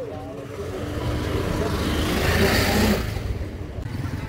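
A motor vehicle driving past close by, growing louder for about two and a half seconds and then fading away.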